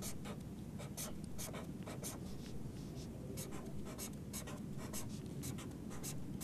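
Felt-tip marker scratching across a white writing surface, drawing small rectangles in a quick run of short strokes, about three a second, faint over a low room hum.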